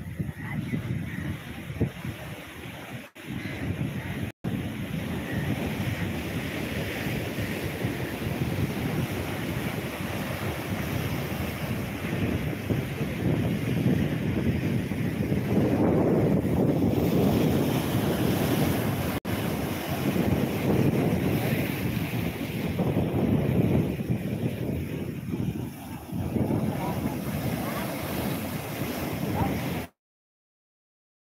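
Sea waves washing and breaking against a rocky shore, with wind buffeting the microphone. The surf swells louder around the middle.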